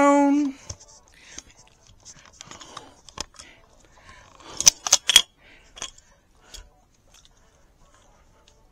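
The tail of a man's loud, drawn-out voice cuts off half a second in. It is followed by faint clicks and rustles from a small handheld camera being handled right at its microphone, with a sharper run of clicks about five seconds in.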